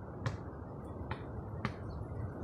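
Basketball bouncing on an outdoor asphalt court: three sharp smacks, irregularly about half a second to a second apart, over a steady low rumble of wind on the microphone.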